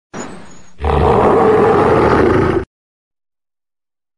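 A tiger's roar played as an intro sound effect: a quieter growl first, then a loud roar lasting about two seconds that cuts off suddenly.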